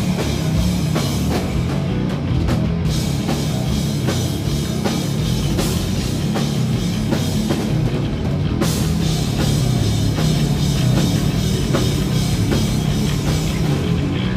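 Heavy metal band playing live: distorted electric guitar and bass over a drum kit, loud and dense, with steady driving drum hits.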